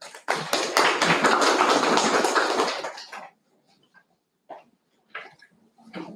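Audience clapping for about three seconds after the closing vote of thanks, then the applause dies away into scattered faint sounds.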